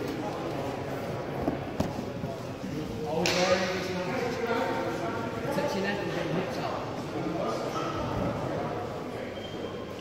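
Indistinct chatter of spectators talking in a large sports hall, with a brief knock about two seconds in.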